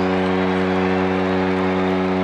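A foghorn sounding one long, loud, steady blast on a deep note with many overtones, strong enough to shake the platform it stands on.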